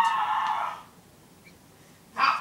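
A high-pitched held sound, steady in pitch, that fades out under a second in; after it, quiet room tone.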